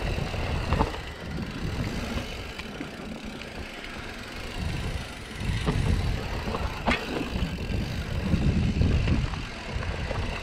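Mountain bike rolling fast down a dirt singletrack: knobby tyres rumbling over dirt and roots, with a few sharp clacks and rattles from the bike as it hits bumps.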